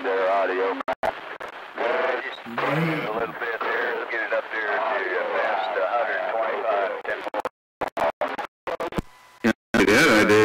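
Talk coming in over a CB radio, rough and hard to make out. Near the end the signal breaks up, cutting out and back in several times.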